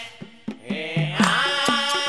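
Assamese Nagara Naam devotional music: drum strikes at about two a second, with the music dropping back briefly near the start before a held melodic line comes back in just past a second in.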